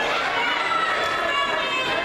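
Wrestling crowd: many spectators' voices overlapping in chatter and shouts.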